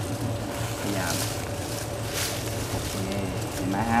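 A steady low hum under faint background voices, with a couple of brief soft rustles, as from movement in the undergrowth.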